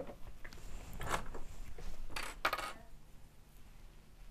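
Small plastic sewing clips clicking and clattering as they are handled and snapped onto folded knit fabric, with the fabric rustling. A few short bursts in the first three seconds, then it goes quiet.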